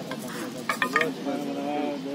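Indistinct voices of several people, one of them holding a long drawn-out vowel in the second half, with a few quick clicks near the middle.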